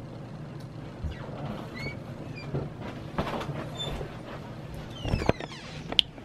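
Handling noise as the camera is set up in a small room: faint knocks and rustles over a low steady hum, with a few short squeaks and a louder bump near the end.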